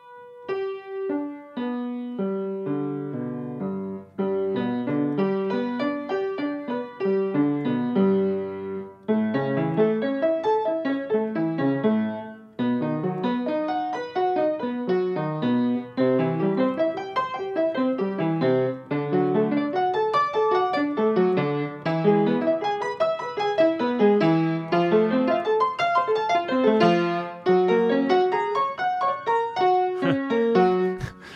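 Upright piano played in arpeggios: broken chords running up and down over about two octaves at an even pace. The first part stays in the lower register; from about nine seconds in, both hands play and the runs cover more of the keyboard.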